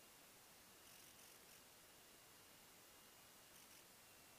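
Near silence: a faint steady hiss with a thin high tone, and two brief faint flutters of noise, about a second in and near the end.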